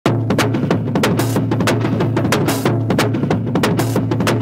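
Sped-up phonk track intro: a quick, evenly repeating drum pattern over a held low bass note.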